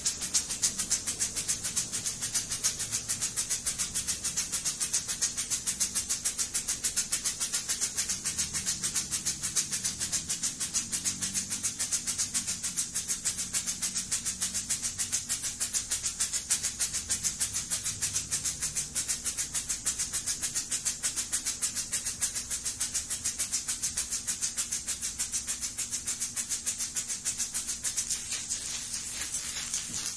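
Handheld shaker rattled in a fast, even rhythm, a bright, hissy stroke repeated several times a second, growing weaker near the end.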